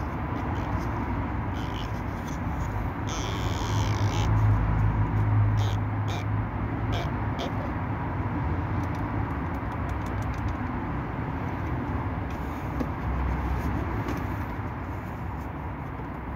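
A car engine idling steadily with a low hum, swelling louder for a few seconds about three to six seconds in, with a few light clicks.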